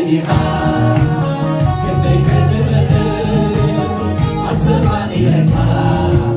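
Live gospel worship music: a man leads the song over the church PA with the congregation singing along, backed by a band with drums keeping a steady beat.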